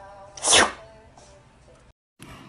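A cat sneezing once, a short sharp burst about half a second in.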